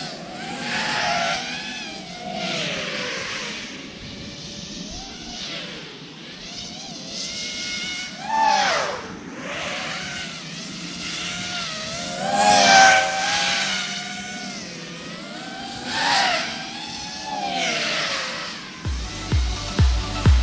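Racing drone's brushless motors and propellers whining, the pitch gliding up and down with the throttle and swelling as the drone passes close several times, loudest about twelve seconds in. Electronic dance music with a heavy beat comes in near the end.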